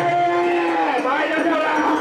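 A long drawn-out shouted call from a mikoshi carrier, held on one steady pitch and falling away about a second in, over the noise of the crowd of carriers.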